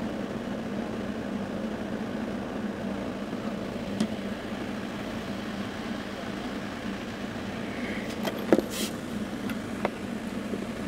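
Steady running noise of a car moving slowly, with a few sharp clicks: one about four seconds in and a couple near the end, the loudest among them.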